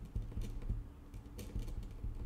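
Pen writing on paper: a few light ticks and scratches of the tip on the sheet.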